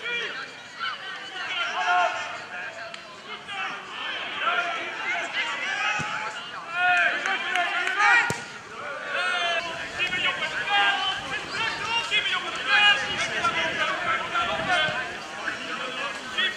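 Pitch-side sound of an amateur football match: players' voices shouting and calling across the field. A football is kicked with a sharp thud about halfway through.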